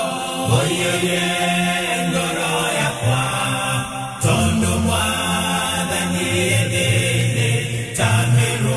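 Music: a Kikuyu gospel (kigooco) song with long sung notes over a steady backing, a new phrase with a deeper bass line coming in about four seconds in.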